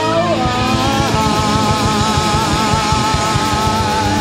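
Live rock band at full volume: a drum kit is struck in rapid, closely spaced hits with cymbals, under a long held, wavering electric guitar note.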